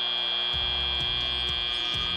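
FIRST Robotics Competition field's end-of-match buzzer: one steady, high-pitched electronic tone, held without a break, signalling that the match timer has run out.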